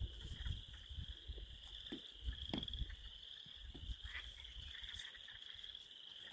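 A steady, high-pitched chorus of many frogs calling from the pond, with low rumbles on the microphone.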